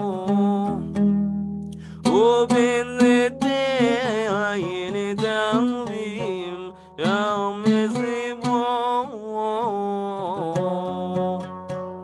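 A man singing a Sephardic Shavuot hymn to a Western Turkish melody, in long ornamented phrases over steady instrumental accompaniment. The voice pauses briefly about a second in and again near the seven-second mark.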